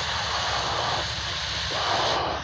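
Steady rushing noise with a rough low rumble: wind buffeting an outdoor microphone.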